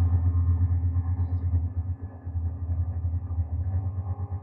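Low, self-sustaining drone from a chain of guitar effects pedals: a deep, steady hum that wavers rapidly in loudness, with a short dip about two seconds in.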